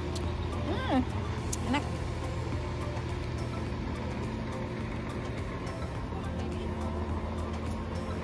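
Steady low engine hum, as of a motor vehicle idling nearby in the street, with two short voiced sounds about one and two seconds in.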